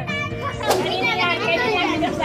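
Children's voices shouting and squealing excitedly, with a sudden sharp snap about two-thirds of a second in, over background music.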